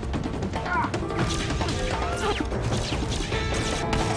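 TV action-scene soundtrack: a run of crashes and impacts from a gunfight, over dramatic background music.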